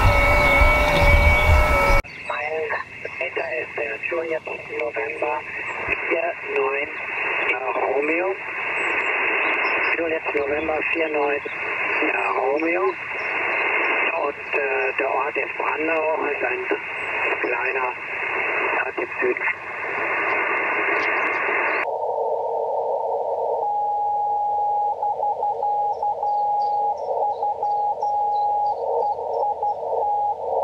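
Single-sideband voice from the QO-100 satellite coming out of an Icom transceiver's speaker: muffled, thin voice audio over hiss, opening with a couple of seconds of several steady tones. About 22 seconds in, a narrow filter takes over and a single whistling tone plays, breaking on and off near the end.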